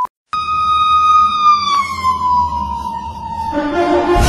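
A siren sounding one long, smooth tone that slides slowly down in pitch, then music comes in near the end.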